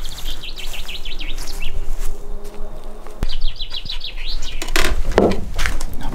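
A small songbird singing two short songs, each a quick run of chirping notes that falls slightly in pitch, the second about three seconds after the first.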